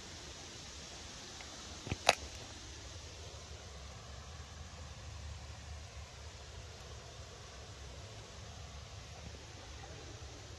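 Quiet outdoor ambience: a steady low rumble with a faint even hiss, broken once about two seconds in by a sharp double click.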